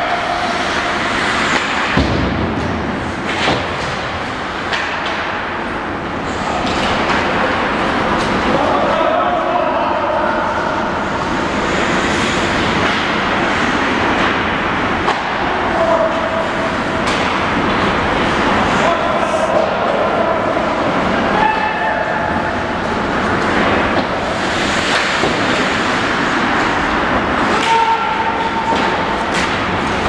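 Ice hockey game heard from rink-side, loud: a steady din of indistinct voices and shouts echoing in the arena, with occasional knocks from sticks and pucks in play.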